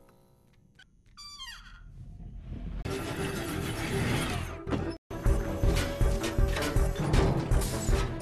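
Animated-film soundtrack: after a quiet start, a falling whistle-like sound effect, then a swelling rush of noise. A brief dropout about five seconds in, then loud action music with heavy pounding beats.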